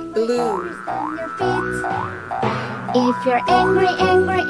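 Cartoon background music with a cartoon character's vocal sounds and a run of short rising sound-effect swoops, about two a second.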